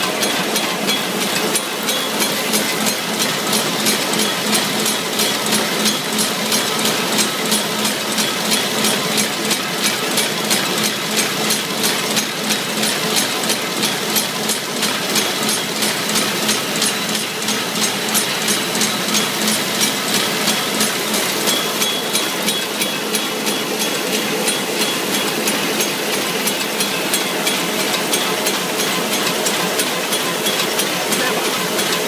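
Nanjiang HD-200 roll-fed square-bottom paper bag making machine running, a steady mechanical hum with a fast, even clacking rhythm.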